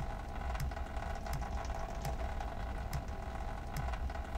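Computer keyboard number keys being pressed to switch views: about half a dozen short, separate key clicks spread over a few seconds, over a steady low hum.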